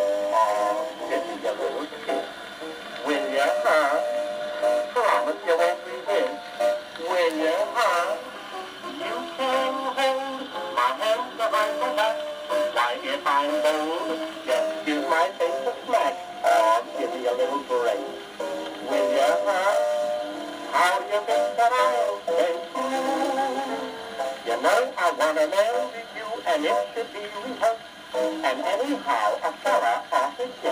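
Sears Silvertone wind-up acoustic phonograph playing an old disc record: a singer with instrumental accompaniment, sounding thin with no bass, over the record's surface crackle.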